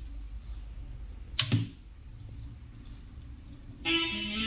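Hands working a Music Hall mmf-2.2 belt-drive turntable: a sharp click and a soft thump about a second and a half in as the tonearm is set down on the record. Guitar music starts near the end.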